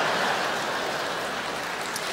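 Large audience applauding, a dense, even clatter of clapping that eases off slightly.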